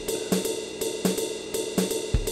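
Drum pattern from the Groove Pizza web sequencer playing its Jazz Swing preset at a slowed tempo of 82 beats per minute: a repeating kit rhythm of cymbal and hi-hat strokes with snare and bass drum hits, about three to four strokes a second.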